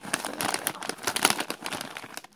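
Plastic snack bag of caramel corn puffs crinkling as it is gripped and turned over in the hands, a dense run of irregular crackles.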